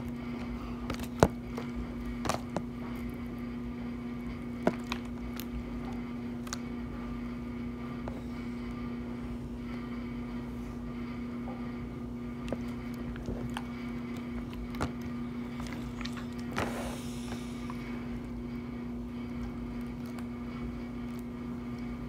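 Glitter slime being kneaded and stretched by hand in a plastic bowl, giving scattered small wet pops and clicks, the loudest about a second in. Under it runs a steady low hum.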